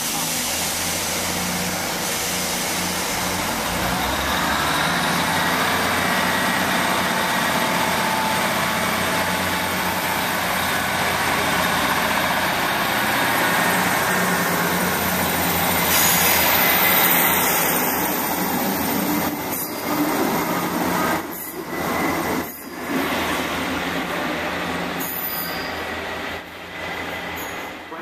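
Trains at a station platform: a South West Trains Class 158 diesel multiple unit running with a steady low engine hum, and a Class 444 electric unit moving along the platform. The noise builds to its loudest about 17 seconds in, then eases with a couple of brief dips.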